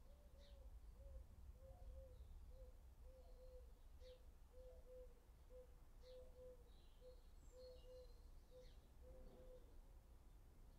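Faint cooing of a dove, repeated steadily in a two-notes-then-one rhythm, with a few thin bird chirps over a low background rumble.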